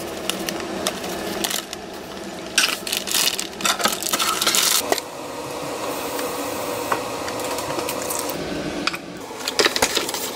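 Kitchen prep sounds: a bag of dry pancake mix rustling and pouring, with scattered clicks and knocks. There is a steadier, quieter hiss through the middle stretch, and more clicks near the end as an egg carton is handled.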